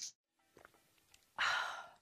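Near silence, then a short audible breath, a sigh-like intake of air, about a second and a half in that fades out over about half a second.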